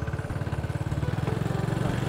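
Small motorbike engine running as the bike rides along at a steady speed, its quick, even engine beat growing a little louder toward the end.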